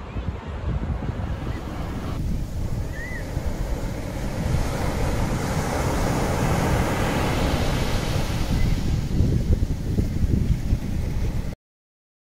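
Ocean surf breaking, with wind buffeting the microphone in a heavy, fluttering low rumble; a brief high chirp about three seconds in. It cuts off suddenly near the end.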